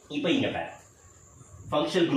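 A man speaking: a short phrase, a pause of about a second, then speech again near the end. Under it runs a faint, steady, high-pitched whine that cuts off just before the speech resumes.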